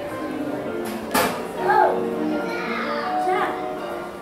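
Background music playing in a shop, held notes under the chatter of children's voices. A sharp click sounds a little past one second in, and a child's high call, the loudest sound, comes just after it.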